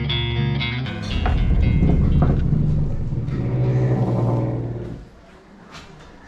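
Background guitar music stops about a second in. Street sound follows, in which a motor vehicle's engine passes, loud with a low rumble, and fades out about five seconds in. A single sharp click comes near the end.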